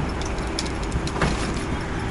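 Steady low rumble of road traffic and riding noise, with a faint steady hum and a few short light clicks and rattles.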